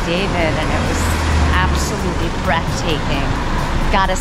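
A motor vehicle drives past close by on a city street, its low engine rumble rising for about a second, with people's voices talking over the street noise.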